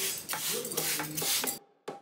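Glass plant mister with a brass pump spraying water mist over houseplants: a steady hiss that stops about a second and a half in.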